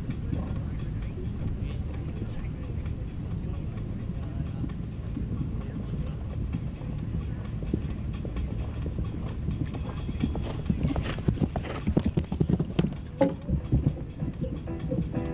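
A horse's hooves on grass turf at the canter, the hoofbeats coming loud and close over the last few seconds, over a steady low rumble.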